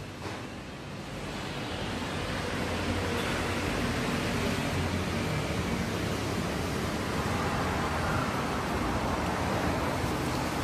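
Steady rushing hiss of nitrogen flowing through a tyre-inflation hose into a car tyre, building up over the first couple of seconds and then holding level.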